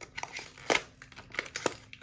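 Sonny Angel blind box being torn open by hand: irregular crinkling and tearing of the packaging with a few sharp crackles, the loudest a little before the middle, as the stubborn seal resists.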